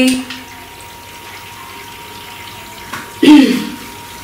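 Steady background hiss with a faint high steady tone, then a woman briefly clearing her throat about three seconds in.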